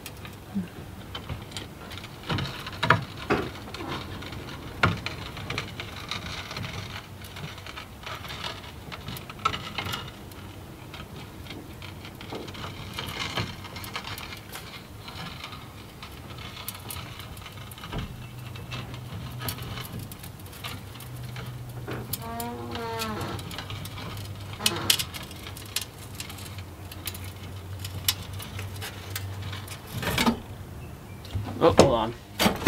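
Sheet steel being worked by hand through a bead roller's rollers to form an offset step: scattered clicks, scrapes and light metallic rattles, irregular rather than rhythmic.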